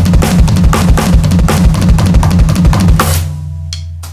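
Electronic drum kit playing a fast drum-solo passage of rapid snare-and-tom triplet figures over bass drum. It ends about three seconds in on a final hit whose low ring fades out.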